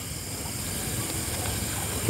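Steady hiss of outdoor background noise, with no distinct event.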